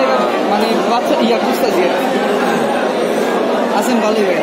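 Several people talking at once: steady, overlapping market chatter, with no single voice standing out.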